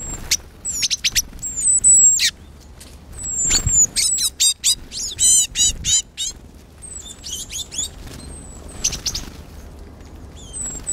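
Tits, great tits among them, calling busily: many short high chips and thin falling whistles, with a quick run of rapid notes about five seconds in.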